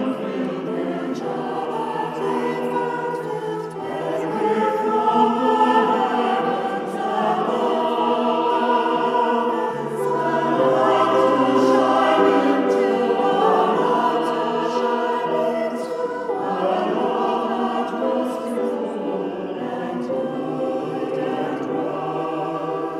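A choir singing a Christmas carol in sustained, held chords, swelling louder twice and easing back.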